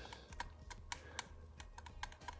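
Faint, irregular light clicks and taps from plier tips and a thin metal tool pressing a strip of adhesive copper foil tape flat onto a circuit board.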